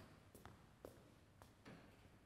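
Faint footsteps of shoes on a wooden stage floor, about five steps, each a short tap.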